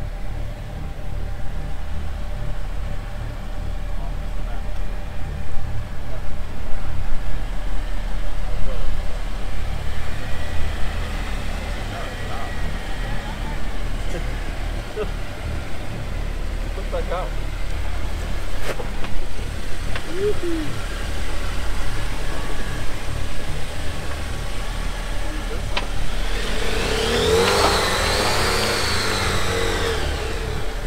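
Jeep Wrangler JL engine running at low revs as it crawls over slickrock, louder for a few seconds about a quarter of the way in.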